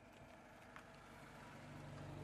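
A car's engine running as the car drives past close by, a low hum that grows louder as it approaches.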